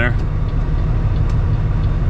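Cummins ISX diesel engine of a 2008 Kenworth W900L running at or near idle, heard inside the cab as a steady low rumble.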